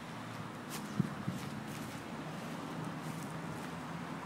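Outdoor ambience: a steady faint hiss, with two soft thumps about a second in and a few faint high ticks.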